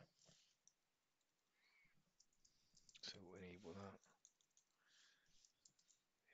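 Faint computer-keyboard typing: scattered light key clicks. About three seconds in, a person's voice gives a short murmur of about a second.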